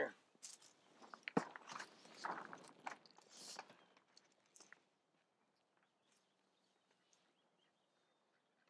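Clear plastic greenhouse sheeting crinkling and crackling in irregular bursts as it is handled at close range, with a sharp knock about a second and a half in. The crinkling dies away to near silence after about four and a half seconds.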